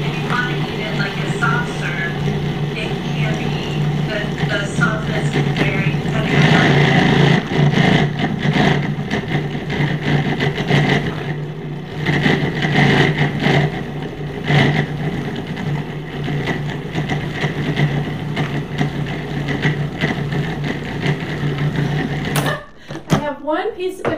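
Food processor motor running steadily as its blade churns frozen banana chunks and a thick chocolate–peanut butter oat milk mixture into nice cream. It is switched off suddenly near the end.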